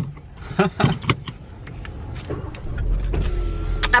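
Drinking from a plastic water bottle inside a car: short clicks and swallows in the first second or so. From about halfway, the car's low rumble swells, and a faint steady whine joins it near the end.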